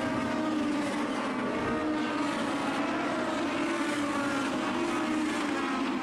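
Legend race cars' Yamaha motorcycle engines running at racing speed around a short oval, a steady engine drone.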